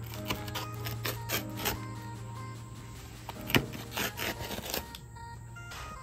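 A pizza wheel cutting through a crisp, griddle-cooked pizza crust on a cutting board, giving a scattered series of crunches and clicks. Background music plays underneath.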